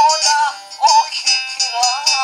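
A woman singing a sevdalinka, a high, ornamented melody with a wavering pitch sung in short phrases, over plucked-string accompaniment.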